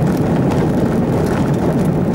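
Steady engine and tyre noise of a vehicle driving on a dirt road, heard from inside the cabin.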